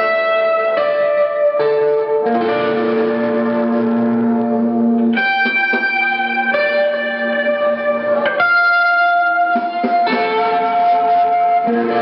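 G&L ASAT electric guitar played clean, sounding held chords and notes that ring out and change every second or so.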